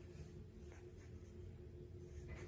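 Faint scratchy scrapes and small clicks from a Shih-tzu puppy nosing at its stainless steel feeding bowls, over a steady faint hum.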